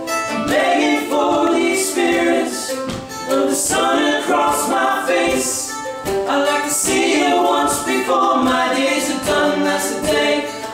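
Three male voices singing a song in close harmony, phrase by phrase, with an acoustic guitar played underneath.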